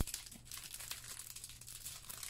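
A thick, stiff vinyl passport case being flexed and bent between the hands, crinkling and crackling with many small ticks. There is one sharper click right at the start.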